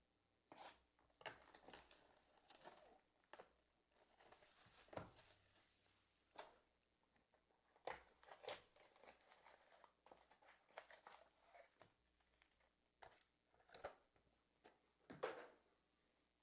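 A 2022 Illusions football trading-card box being opened and its foil packs handled: faint, scattered crinkles, tearing and light cardboard taps, a little louder around five seconds in and near the end.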